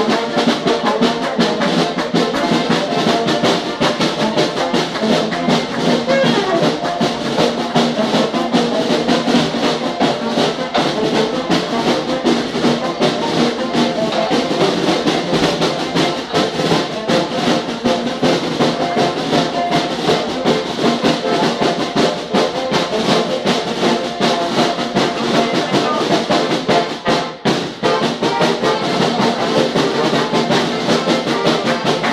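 A small brass band playing live: trumpets and trombones over a marching drum keeping the beat, with a brief dip in loudness near the end.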